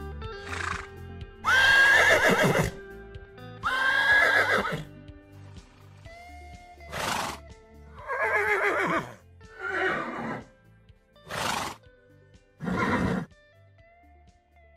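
A horse whinnying twice, loud and falling in pitch, then several shorter horse calls, over soft background music.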